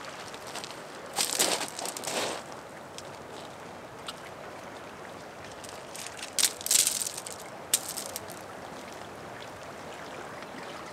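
Stones scraping and crunching against stone and grit as they are handled and set in place, in two short rough bursts, one about a second in and a longer one past the middle, over a steady faint background hiss.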